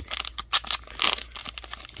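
Card-pack wrapper crinkling as it is torn open and peeled back by hand: a rapid run of sharp crackles, loudest about half a second and a second in.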